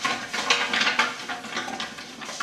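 A hand stirring the drawing entries around inside a stainless steel stockpot: a busy run of quick, irregular rustles with light knocks and scrapes against the metal.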